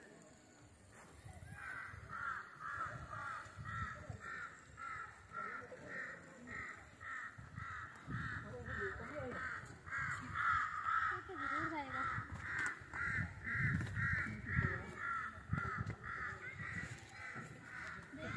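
A bird calling over and over in a steady series, about two short calls a second, starting shortly after the beginning and running on to the end.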